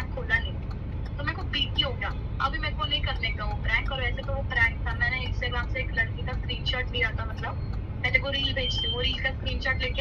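Steady low road rumble inside a moving car's cabin, with a voice going on over it without pause.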